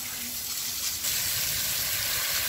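Garden hose spray nozzle hissing steadily as water soaks the soil and leaves of a rose bush, the spray getting a little louder about a second in.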